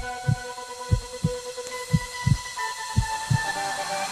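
Heartbeat sound effect in a TV intro soundtrack: four pairs of low thumps, one pair about every second, over a held synth chord.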